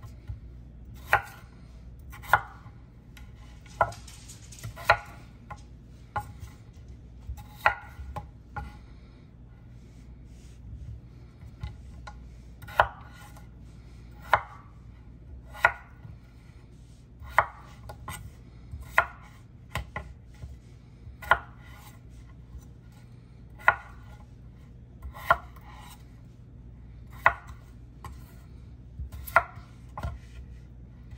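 Chef's knife cutting peeled potatoes into chunks on a wooden cutting board: a sharp knock each time the blade goes through and strikes the board, about every one to two seconds, over a low steady hum.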